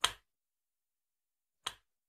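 Two mouse-click sound effects from a subscribe-button animation: a sharp click as the cursor presses Subscribe, then a second, slightly quieter click about a second and a half later as it presses the notification bell.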